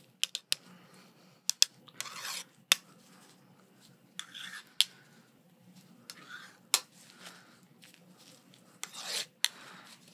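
Close-up handling sounds of gloved hands with a wooden ruler and a marking pencil: sharp clicks and taps scattered through, and about four short scratchy rubbing strokes, as of a pencil marking.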